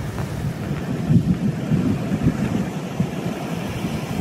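Sea surf washing against a rocky shore, with an uneven low rumble of wind buffeting the microphone.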